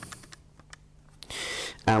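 Keys of a handheld scientific calculator being pressed: a few quiet clicks, then a short hiss about a second and a half in.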